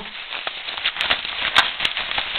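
Rustling of a lightweight running jacket being pulled out of a small waist pack by hand, with a few sharp clicks in the second half.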